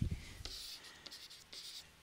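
Faint scratching of handwriting strokes as a short word is written.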